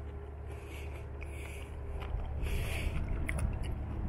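Soft, faint scraping and squishing of a very soft, overripe fig being pulled apart by hand, over a steady low rumble.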